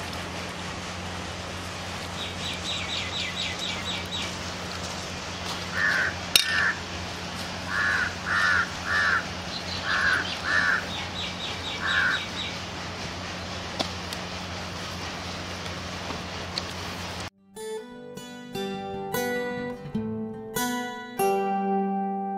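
Crows cawing: about eight short caws in loose clusters over a steady low hum and outdoor background noise, with a quick high chattering call heard twice in between. Plucked-string music takes over abruptly near the end.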